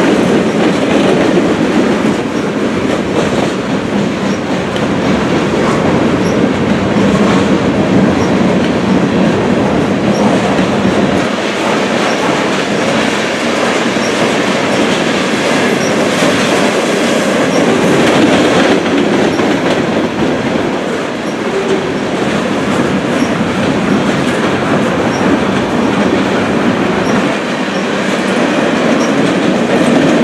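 Manifest freight train's boxcars and covered hoppers rolling past at close range: a loud, steady rumble and clatter of steel wheels on the rails.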